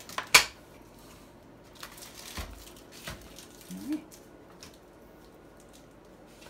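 Folding steel-and-plastic hand truck (COSCO Shifter) being converted from cart to upright hand-truck mode: one sharp loud clack from its conversion latch just after the start, then a few lighter clicks and a low thud as the frame is moved into position.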